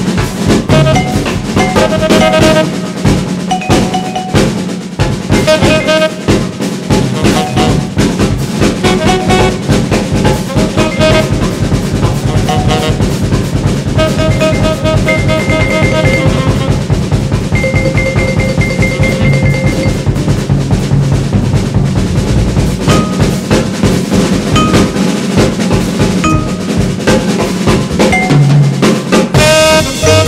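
Swing jazz recording with the drum kit out front: fast, busy snare, rimshot and bass drum playing, with pitched notes ringing over it, some held for a couple of seconds around the middle.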